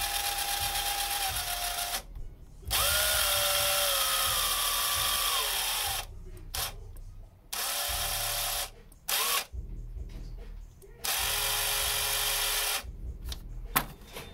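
Snap-on CT725 cordless 1/4-inch-drive impact wrench spun free with no load in about five trigger pulls: a steady motor whine, its pitch falling as it winds down, with short pauses between runs.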